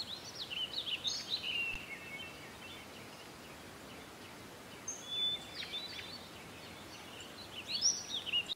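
Birds chirping and twittering: quick rising and falling high notes in a cluster over the first two seconds, more about five seconds in and again near the end, over a faint steady hiss.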